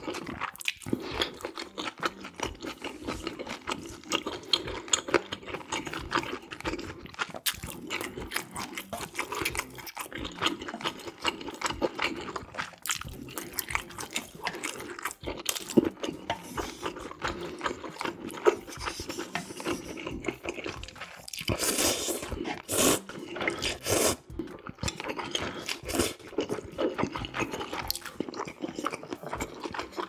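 A person eating black-bean-sauce ramen noodles: wet chewing, smacking and small clicks throughout. About twenty-two seconds in there are three louder, longer slurps.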